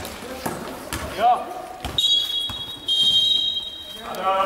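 A basketball bouncing and thudding on a gym court, then a referee's whistle held shrill and steady for about two seconds from halfway through, with a step in pitch near the end, stopping play.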